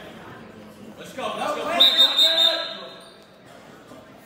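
Voices shouting across a large school gymnasium, loudest from about one to two and a half seconds in, with a quieter hubbub before and after.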